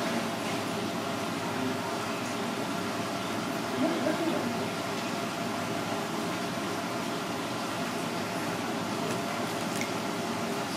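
Steady background hum with faint, indistinct voices of people talking in the background, loudest about four seconds in.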